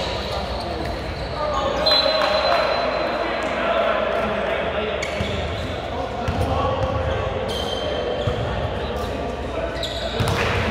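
Basketball bouncing several times on a hardwood gym floor, with indistinct voices echoing in a large hall.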